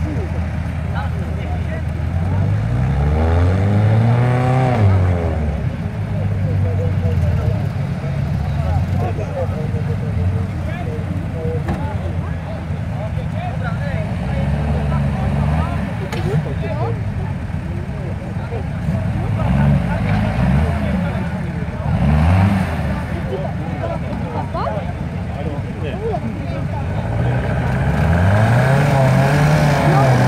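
Off-road vehicle engines revving up and down in deep mud, several times over a steady idle, with voices in the background.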